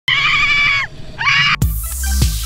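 A woman screaming twice, high-pitched: a long scream that drops in pitch at its end, then a shorter one. About one and a half seconds in it cuts suddenly to electronic dance music with a deep bass and a thumping beat.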